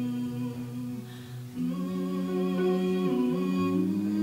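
Live acoustic band music: a female voice singing long wordless notes over acoustic guitar and upright double bass. The phrase breaks off briefly about a second in, and a new set of sustained notes starts about a second and a half in.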